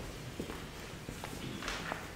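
Soft footsteps of a person walking away: a few separate light knocks spread over two seconds.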